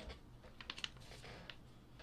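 A few faint, scattered clicks and taps over low room tone.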